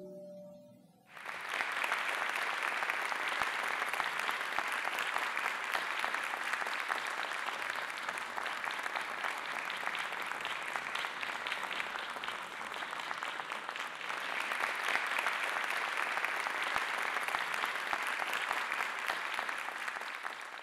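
The last notes of two grand pianos die away, and about a second in an audience breaks into steady applause.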